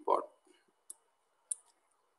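A brief bit of a man's voice at the start, then two sharp computer mouse clicks a little over half a second apart, selecting the text in a browser search box.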